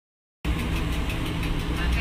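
Dead silence for about the first half-second, then the steady low hum of a NAW trolleybus running, heard from inside the driver's cab.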